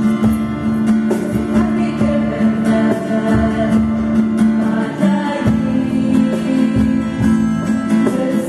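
Small church choir (schola) singing a slow hymn in sustained notes over strummed acoustic guitar, with the reverberation of a church nave.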